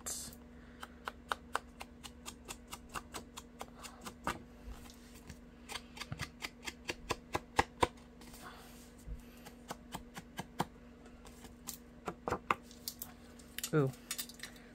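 Foam sponge dauber dabbed repeatedly against the edges of a paper panel to ink them, making quick irregular taps a few per second, with a short lull in the middle.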